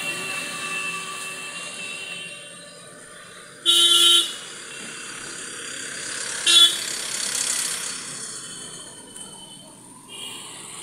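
Street traffic with a vehicle horn honking twice: a blast of about half a second some four seconds in, and a shorter toot a couple of seconds later, over the steady sound of passing vehicles.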